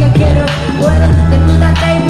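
Loud live hip hop played through a concert sound system: a heavy bass beat with a rapper's voice over it.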